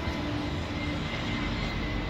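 Steady outdoor background noise with a low rumble and a few faint sustained tones over it.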